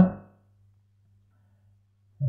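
A man's voice trailing off at the very start, then a pause with only a faint steady low hum.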